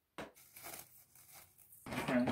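Clear plastic stretch wrap crinkling and tearing as it is pulled off the roll and stretched, in uneven rustles, with a louder stretch of sound starting near the end.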